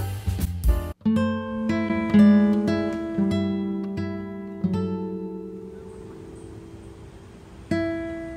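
Background music: a busy track with drums cuts off about a second in, and a slow plucked-guitar piece begins, single notes ringing out and fading away, growing quieter before fresh notes come in near the end.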